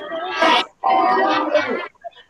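A class of children shouting a thank-you together over a video-call connection, in two loud bursts.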